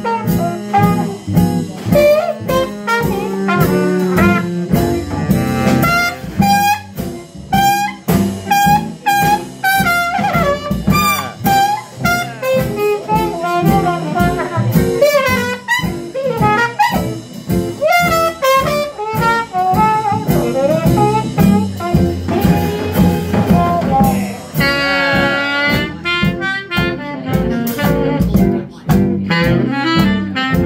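Live Dixieland jazz band playing: trumpet and baritone saxophone trading the lead over walking double bass, rhythm guitar and drum kit. The trumpet carries the line through the middle, and the baritone sax takes over near the end.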